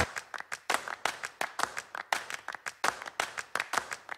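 Hand claps from a few people: sharp, uneven claps, several a second, with no music under them.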